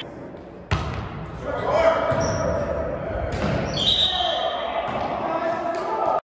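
A volleyball struck hard once, a sharp smack about a second in, echoing in a large gymnasium, followed by players calling out on court.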